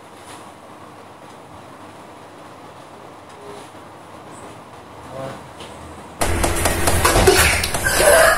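Kitchen knife scoring the sides of a fresh catfish on a plastic cutting board, faint and soft. About six seconds in, a sudden loud noisy clatter with knocks takes over.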